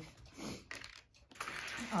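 Light clicks and rustles of craft supplies being handled and set down on a wooden table.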